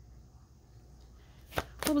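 Quiet at first, then two sharp clicks of a tarot card deck being handled as it starts to be shuffled, about a second and a half in, just before a woman's voice begins.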